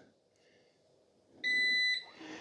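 Eufy RoboVac 25C robot vacuum giving one steady electronic beep, about half a second long, near the end: its acknowledgement of the spot-clean command sent from the remote.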